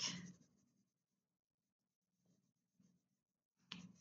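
Near silence, with faint scratching of a wax crayon being rubbed across paper.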